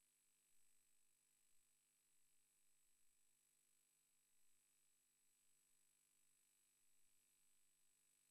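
Near silence: only the faint steady hiss of an idle audio feed, with a thin high whine running through it.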